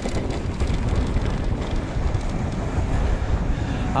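Wind buffeting the camera microphone while an e-mountain bike is ridden, mixed with the rumble of its tyres over stone paving and road: a steady, low rushing noise with no clear tone.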